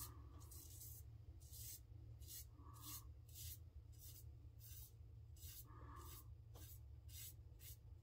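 Faint, repeated short scrapes of a Quantum double-edge safety razor drawn through shaving lather over scalp stubble, a stroke every half second or so.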